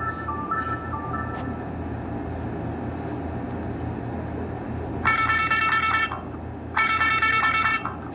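Nokia 5228 ringtones playing through a Nokia 130's small loudspeaker. A simple stepped tune fades out in the first second and a half, leaving a few seconds of low hum. A new ringtone then starts with two short bursts of rapid bright notes, about five and seven seconds in.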